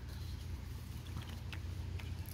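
Quiet handling of a metal flaring tool: two faint light clicks a little past the middle as the tool's yoke is fitted onto the flaring bar, over a low steady rumble.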